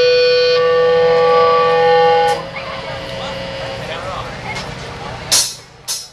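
A loud, steady, buzzy amplified note from the band's equipment is held for about two seconds and then cut off suddenly. Quieter voices follow, and near the end there are two sharp hits just before the rock song begins.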